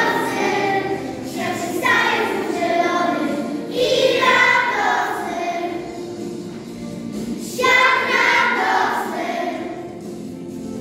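A children's choir singing a song, phrase after phrase, with new phrases starting about two, four and seven and a half seconds in.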